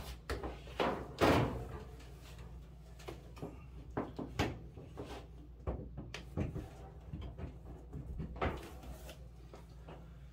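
Scattered knocks, clunks and clicks of hands handling a dryer's plastic control console and parts in a cardboard box, the loudest clunk about a second in.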